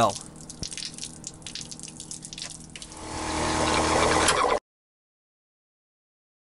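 Sink drain water pouring from a hose out of a van's rear wheel well and splashing onto concrete, with a faint steady hum beneath. The splashing grows louder about three seconds in and cuts off suddenly a little later, leaving silence.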